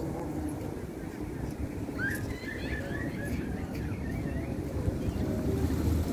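Steady low outdoor rumble of wind on the microphone and distant road traffic. Faint high squeaky calls come in about two seconds in.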